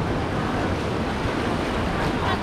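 Small waves washing up the shore in a steady, even rush, with wind buffeting the microphone.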